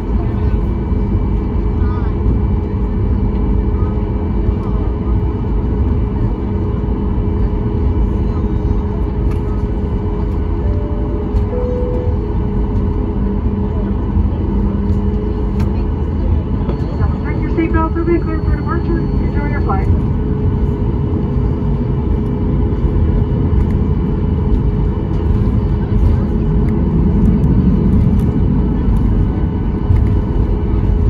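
Cabin noise inside a Boeing 737 MAX 8 taxiing: a steady rumble of its CFM LEAP-1B engines at low power, with a few steady hums running through it. Voices are briefly heard in the cabin a little past halfway.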